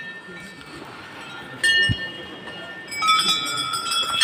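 Metal bells struck and ringing: one strike about one and a half seconds in, then several more from about three seconds in, their tones overlapping and ringing on. A low thump comes just after the first strike.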